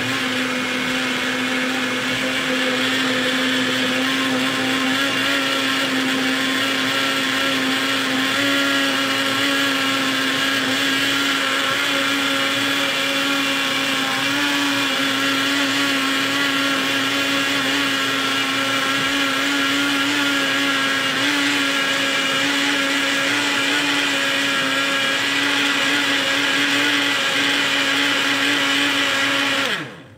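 Electric countertop blender running steadily, blending a banana and powdered-milk shake, its motor holding one steady pitch. It cuts off suddenly at the very end.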